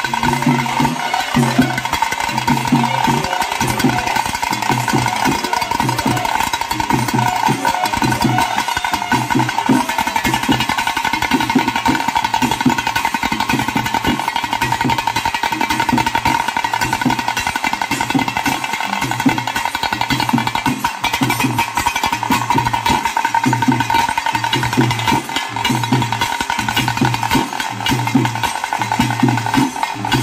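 Nadaswara playing a film-song melody in long held notes over thase drums rolled fast with sticks and a dhol keeping a steady beat.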